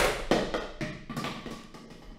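An object falling on a desk and clattering: a loud knock at the start, then a run of smaller rattles dying away over about a second and a half.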